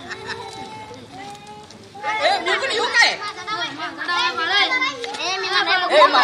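Children's voices chattering and calling out while they play, quieter at first and then louder and busier from about two seconds in.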